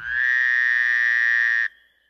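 A loud, buzzy held tone that slides up a little at the start, holds steady for about a second and a half, then cuts off abruptly.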